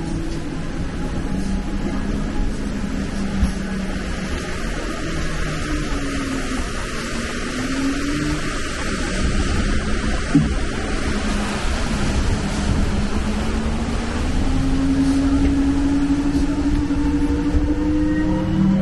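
Open-sided shuttle tram driving along a paved road, its drivetrain running with a steady hum and road noise; near the end the motor's pitch rises as it picks up speed. A single sharp knock about ten seconds in.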